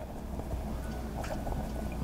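Faint, soft dabbing of a damp makeup sponge patted against the skin, over a steady low hum.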